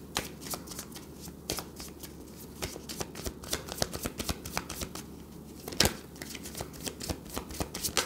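A deck of tarot cards being shuffled by hand: a run of quick, irregular card clicks, with one sharper snap about six seconds in.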